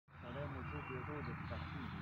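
Indistinct voices, too faint for words, over a steady low hum.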